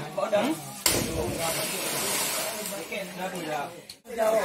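People talking and calling out, with a sudden rush of noise about a second in that fades away over the next two seconds.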